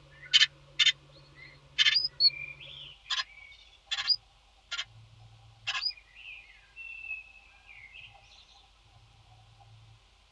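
Great tit at its nest in a wooden nest box, settling onto its eggs: about seven sharp clicks or scratches in the first six seconds, with thin high chirps and gliding calls between them and after them.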